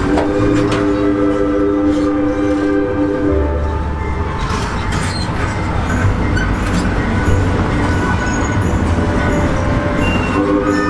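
Train horn sounding one steady chord of several notes for about three seconds, then the low rumble and rattle of the moving passenger train.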